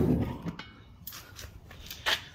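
Propane foundry burner's steady roar dying away over the first half second as the gas is shut off at the tank valve, leaving quiet with a few faint ticks.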